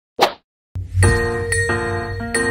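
A short pop sound effect right at the start, then after a brief silence an intro music jingle of ringing pitched notes begins, under the animated logo.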